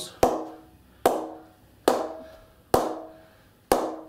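A leather cricket ball bounced repeatedly on the face of a BAS Bow 20/20 Grade 1 English willow cricket bat: five sharp knocks a little under a second apart, each with a short ringing ping. This is a test of the bat's response, and the rebound is excellent.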